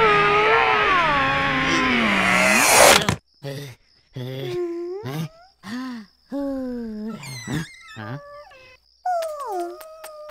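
A swelling music cue cuts off abruptly about three seconds in. A cartoon character's wordless voice follows in a string of short groans and moans, with brief silences between them.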